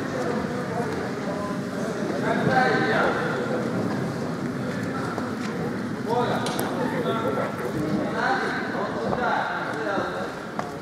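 Indistinct voices talking, with no words clear, over a steady background of arena noise.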